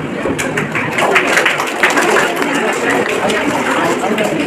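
Indistinct audience chatter, with a quick run of sharp clicks in the first two seconds.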